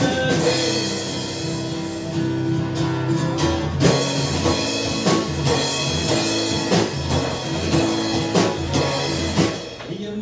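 Live band music without vocals: acoustic guitar strummed with drums from a small standing kit, the drum strikes coming in steadily from about four seconds in.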